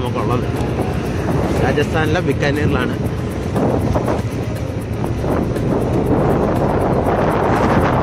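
Wind buffeting the microphone over the steady running noise of a moving vehicle, growing a little louder near the end.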